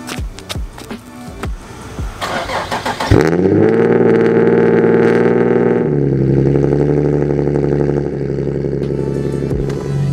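Nissan 370Z's V6 cold-starting: it catches suddenly about three seconds in, flares up and holds a high idle, then drops to a lower steady fast idle about six seconds in.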